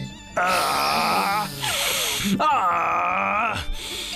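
A cartoon character's voice making two long, wavering moans of pleasure as he savours a delicious food smell, over background music.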